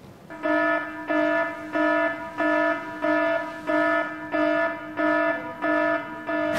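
An electronic beep repeating at a steady pitch, about one and a half beeps a second, nine beeps in all, each lasting about half a second.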